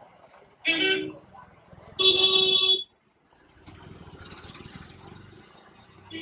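A vehicle horn honking twice: a short toot, then a longer one of nearly a second. A quieter, even rush of street traffic noise follows for about two seconds.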